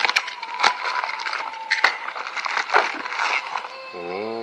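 Plastic air-column packaging crinkling and crackling with many sharp snaps as it is slit with a knife and pulled away from a cardboard box. A thin squeaking tone runs through the first two seconds or so.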